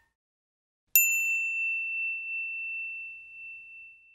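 A single high ding about a second in, ringing on and fading slowly: the notification-bell chime sound effect of a subscribe animation.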